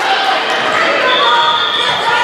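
A volleyball bounced once on the hardwood gym floor about half a second in, then a referee's whistle blowing one steady high note for about a second near the end, over spectators' chatter echoing in the large gym.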